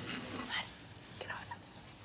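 Faint, indistinct voices over quiet room tone.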